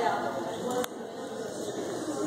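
A voice talking briefly at the start, then low room noise, with one sharp click a little under a second in.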